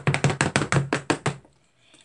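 Two plastic spatulas rapidly chopping against the cold pan of a rolled-ice-cream maker, breaking up Oreo pieces in the freezing cream: quick, even taps at about ten a second that stop about a second and a half in.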